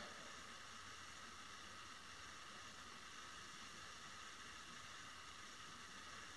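Near silence: a faint, steady hiss of room tone.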